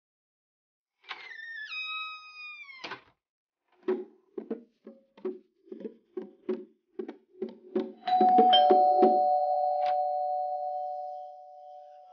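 Bongo drums struck by hand in a steady beat of about three strokes a second, after a short tone that steps down in pitch. Near the end of the drumming a loud held two-note tone comes in and slowly fades.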